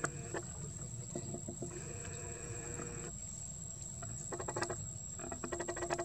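Outdoor ambience with a steady high-pitched insect drone, a few soft clicks, and two short bursts of rapid clicking or chattering in the second half.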